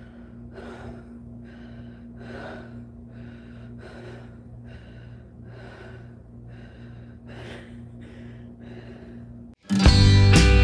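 Heavy breathing close to the microphone, short breaths at about one and a half a second, over a steady low hum. Near the end it cuts off and loud guitar music starts.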